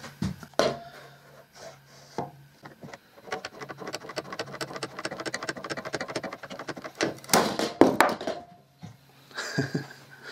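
One-handed bar clamp, reversed as a spreader, ratcheting in rapid even clicks as its trigger is pumped. A little after seven seconds in comes a loud crack and snap as the melamine-faced particle-board glue joint breaks, partly through the joint and partly through the board.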